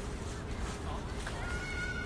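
Outdoor city background noise, a steady low hum, with a faint steady high-pitched tone coming in about a second and a half in.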